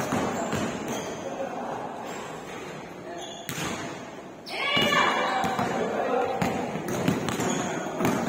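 Basketball dribbling and bouncing on a hardwood court in a large gym, with players' voices calling out, louder from about halfway through.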